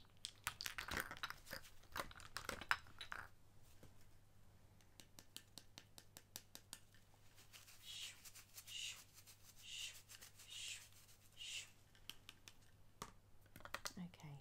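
Faint off-camera handling sounds: a flurry of clicks and rustling, then a run of light rapid clicks, then a series of soft hissing swishes about once a second.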